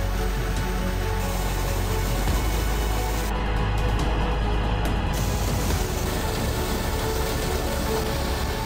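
Background music over the steady rush of pumped groundwater gushing from large discharge pipes into a concrete canal, the outflow of a borehole pumping test. The higher hiss of the water falls away for about two seconds in the middle.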